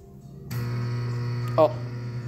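A steady electrical hum, low-pitched and buzzing, comes on suddenly about half a second in and holds without change.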